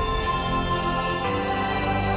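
Instrumental music of held chords that change about every second and a half.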